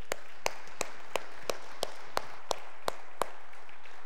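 Congregation applauding, with one person's claps loud and close to the microphone at about three a second. The clapping stops a little after three seconds in and the applause dies away.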